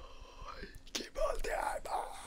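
A man's voice letting out a wordless exclamation in the second half, just after a sharp click about a second in.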